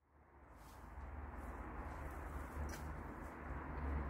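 A garden fork working through wet compost: soft scraping and rustling with a few faint clicks, over a steady low rumble, fading in at the start.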